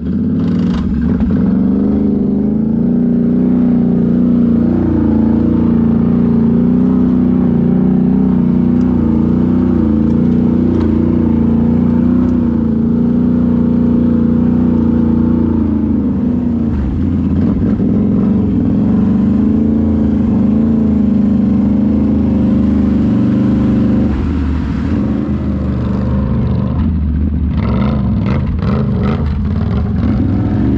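Can-Am Renegade X mr ATV's V-twin engine running under throttle, heard close up from the machine itself, as it rides over rutted, muddy ground. The engine note holds steady for the first half, then rises and falls with the throttle, and a short burst of rattling and scraping comes near the end.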